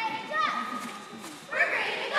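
Girls' high-pitched voices calling out in short shouts, one call held briefly about half a second in, then a louder shout near the end, as cheerleaders call out to start a cheer.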